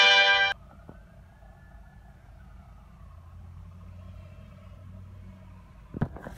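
A short, loud brass music sting that cuts off about half a second in, followed by faint car-cabin noise: a low steady hum with a faint whine that slowly rises and falls.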